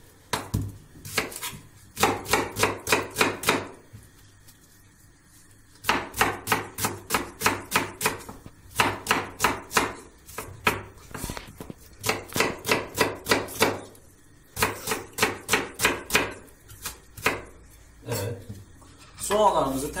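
Kitchen knife chopping onion on a wooden cutting board: quick runs of sharp knocks, about five or six a second, broken by short pauses.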